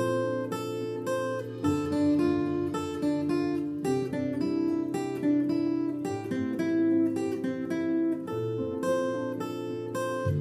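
Acoustic guitar fingerpicked: a slow melody of single plucked notes over ringing bass notes, a piano intro arranged for solo guitar.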